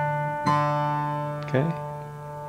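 Acoustic guitar fingerpicking a D chord: a pluck about half a second in, with the low bass note and treble strings ringing on and slowly fading.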